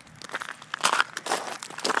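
Rustling and crunching handling noise close to a phone's microphone as it is swung about, irregular and loudest around a second in.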